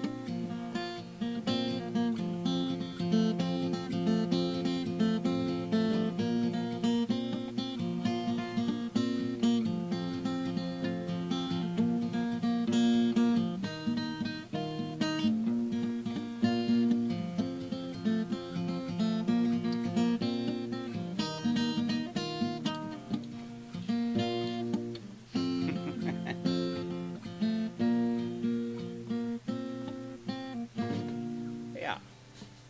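Acoustic guitar fingerpicked at a brisk pace, the fingers picking backwards as well as forwards over the chords to give a rolling pattern of doubled notes, with a brief drop-off about 25 seconds in.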